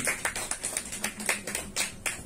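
Scattered applause from a small audience: separate claps at an irregular rate.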